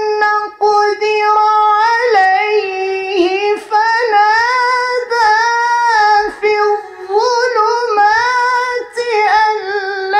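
A male reciter chanting the Quran in a melodic, high-pitched style into a handheld microphone. He holds long, ornamented notes and takes short breaths between phrases, about four times.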